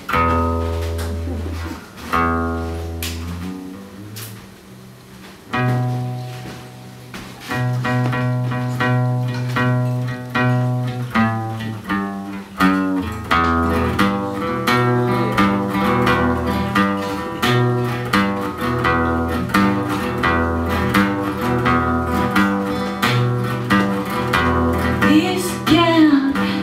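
Acoustic guitar opening a song: a few single strummed chords left to ring and die away, then a steady strummed rhythm from about seven seconds in.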